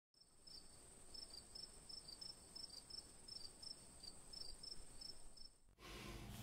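Faint, high insect-like chirping, several short chirps a second over a steady high whine, cutting off suddenly near the end.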